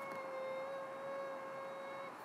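One long, steady high-pitched tone, a heart-monitor style flatline beep signalling death.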